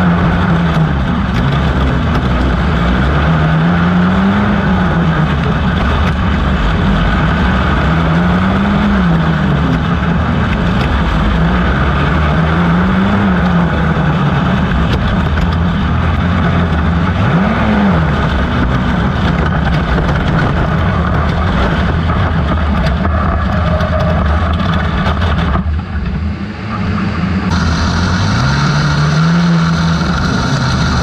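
Onboard sound of a 250-class intermediate outlaw kart engine racing on a dirt oval, its pitch rising and falling every four to five seconds as it accelerates down each straight and lifts for each corner, with other karts running close by. About three-quarters of the way through the sound drops away for a moment, then the engine picks up again.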